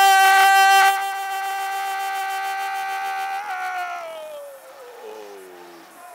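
A radio football commentator's long held goal call, "gooool!", shouted on one steady note. It is loudest in the first second and holds for about three and a half seconds, then slides down in pitch and fades away.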